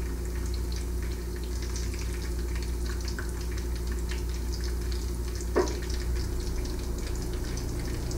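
Bacon frying in an electric skillet: a steady sizzle with faint scattered crackles.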